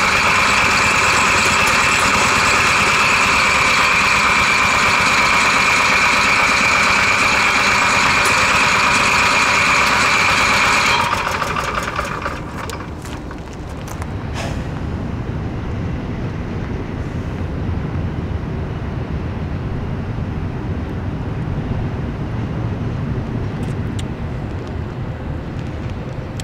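Onan QG 4000 EVAP RV generator running loudly and steadily with a high whine, then dying away about eleven seconds in; this Onan keeps throwing code 36 and will not stay running. A quieter, steady low engine hum carries on after it.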